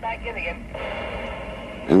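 A thin, radio-filtered voice, then about a second of steady radio hiss with a held tone, like a two-way radio transmission.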